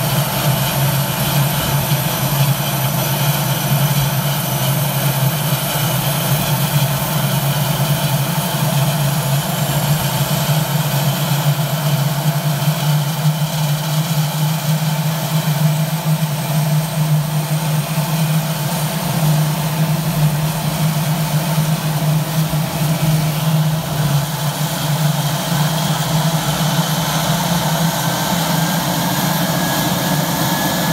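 Pratt & Whitney PT6 turboprop engine of a Daher TBM running steadily at ground idle: a steady low propeller drone with a high turbine whine above it. A faint tone rises near the end.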